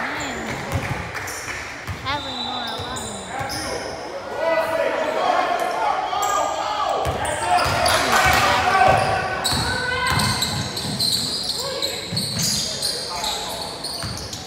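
A basketball bouncing on a hardwood gym floor as it is dribbled up the court, a run of dull thuds, mixed with players and spectators calling out in the echoing gym.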